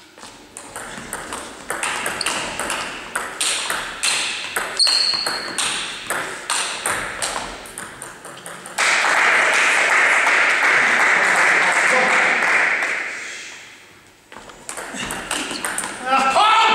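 Table tennis rally: the ball clicking off bats and table in quick, irregular strokes for about eight seconds. The point ends in a sudden burst of spectators' applause that holds for about four seconds and then fades.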